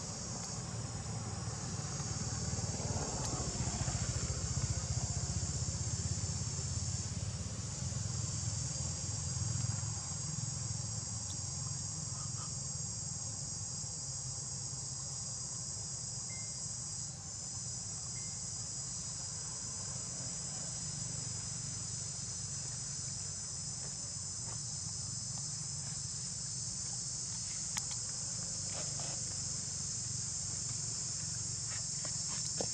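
Steady, high-pitched chorus of insects, with a low rumble underneath that is louder during roughly the first ten seconds.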